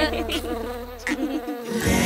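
Cartoon bee buzzing with a wavering pitch over a held low note that cuts off about one and a half seconds in; new music starts near the end.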